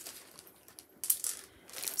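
Quiet handling noise with a short, light rattle of small objects about a second in.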